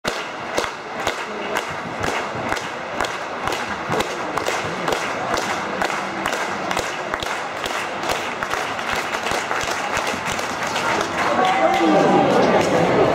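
Spectators clapping in unison, steadily at about two claps a second, over a hubbub of voices: the rhythmic clapping that accompanies a pole vaulter's run-up.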